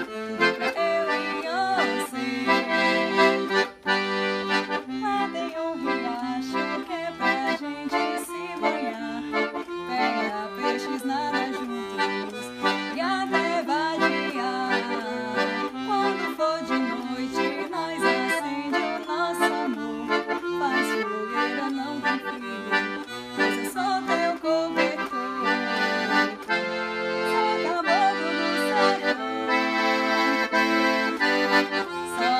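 Piano accordion played solo: a continuous melody over held chords that change every second or so.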